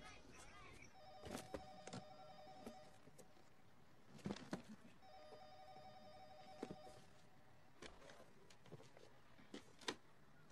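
Office telephone ringing twice, each ring about two seconds long with a short pause between, amid scattered light knocks and clicks.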